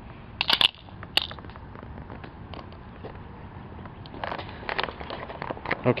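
A spring-loaded wooden mousetrap catapult snapping shut with a sharp crack about half a second in, flinging its plastic spoon arm, followed by a second, lighter click just over a second in.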